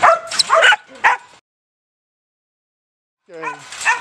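A caged protection-bred puppy barking hard at the person in front of it, about four sharp barks in the first second and a half: fired-up, aggressive barking. The sound then drops out completely for about two seconds and comes back near the end.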